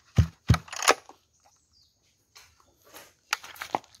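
Three sharp clicks in the first second, then a few fainter clicks near the end: hands working the controls of a small 20 cc two-stroke brush cutter while readying it to start.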